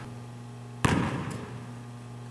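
A single sharp smack of a basketball about a second in, echoing in a large gym, as the ball is passed from under the basket back to the shooter; a faint click follows. A steady low hum runs throughout.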